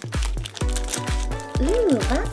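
Background music with a steady beat of about two low thumps a second under held notes, along with the crinkle of a plastic foil blind bag being torn open by hand.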